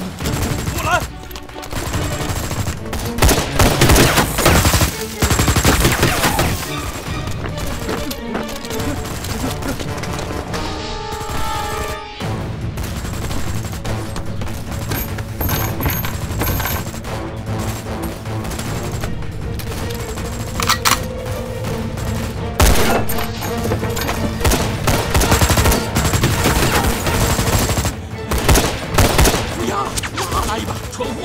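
Action-film soundtrack: repeated gunfire in scattered bursts over dramatic background music.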